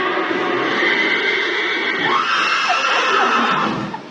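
A horse making one long, loud, rasping call of about four seconds, with a glide in pitch about two seconds in; it cuts off just before the end.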